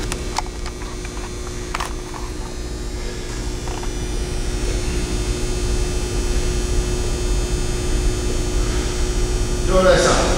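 Steady low hum with a faint constant tone, like mains or ventilation hum, with a few faint knocks in the first two seconds and a brief voice at the very end.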